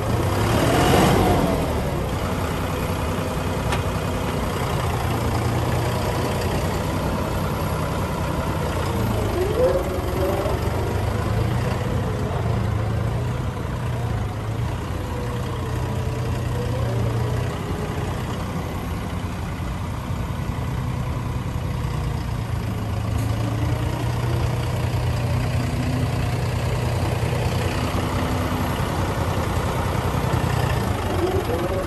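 John Deere 5045E tractor's three-cylinder diesel engine running at low revs while the tractor is driven slowly, its pitch wavering a little with the throttle, and a brief louder swell about a second in.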